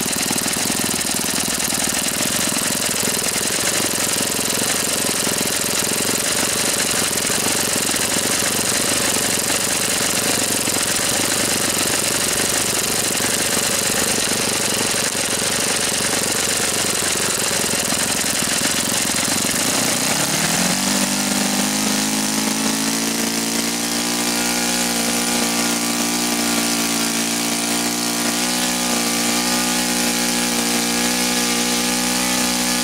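A Magnum FS91AR four-stroke glow engine driving a propeller runs at high speed on its break-in run. About two-thirds of the way through, its sound changes to a smoother, more even note as it begins running out of fuel.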